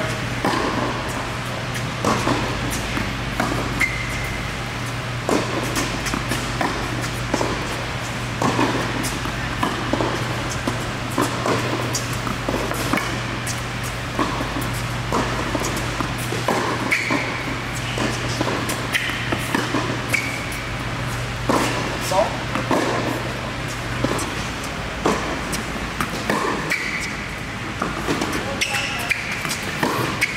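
Tennis balls struck by racquets in a rally in a large indoor tennis hall, sharp echoing hits about once a second, with short high squeaks between them. A steady low hum runs underneath and stops about three-quarters of the way through.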